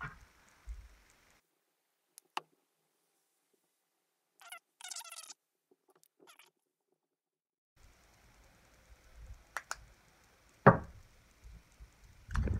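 Small handling sounds at a fly-tying vise: a few faint clicks, a short high squeak midway through a quiet stretch, and a single sharp knock near the end.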